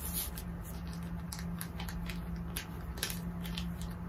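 Light, scattered rustles and taps of paper and fabric being handled on an ironing board, over a steady low hum.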